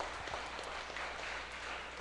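Audience applauding, an even patter of clapping hands that thins out near the end.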